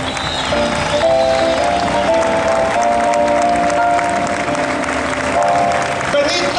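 Audience applauding while the band plays a short fanfare of held chords that change every second or two.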